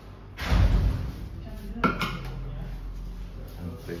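Handling noises: a heavy thump about half a second in, then a single sharp clink just before two seconds.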